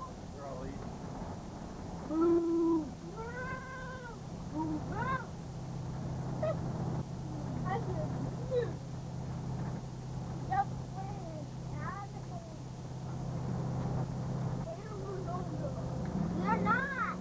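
Motorhome engine droning steadily in the cab while driving, with a series of short, high-pitched calls that rise and fall in pitch scattered through, the loudest about two to four seconds in.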